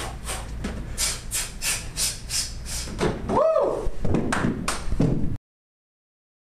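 Gym workout drill heard as a fast, even run of sharp scuffing hits at about four a second, with one short voiced call midway. The sound cuts off suddenly near the end.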